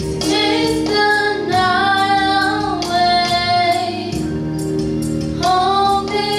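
A girl singing a slow melody of long held notes into a microphone, amplified, over musical accompaniment with a steady beat.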